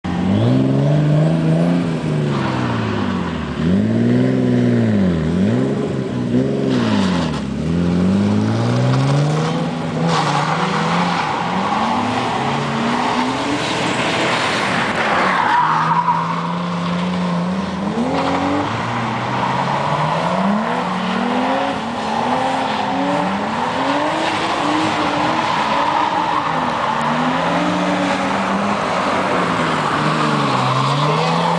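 Car engine revving up and down over and over as the car drifts, its pitch swinging about once a second. From about ten seconds in, a hiss of tyres spinning and sliding on the dusty surface joins it, with a brief falling squeal a little after the midpoint.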